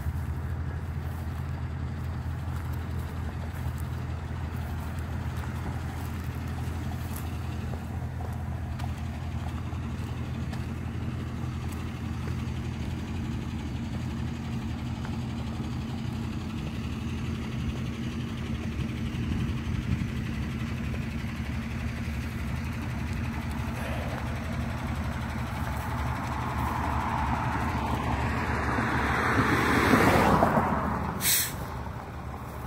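Diesel tanker truck's engine idling steadily, a low hum that grows louder near the end as the truck pulls closer.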